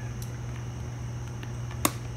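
A steady low hum, with one sharp click near the end.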